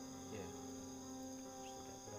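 Crickets chirring steadily, several high-pitched notes overlapping without a break.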